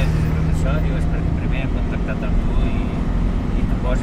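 Road vehicle driving along a paved mountain road: steady engine and road rumble, with a low engine hum that drops away about a second and a half in.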